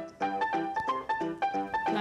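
Background music: a quick piano melody of short notes, about four or five a second.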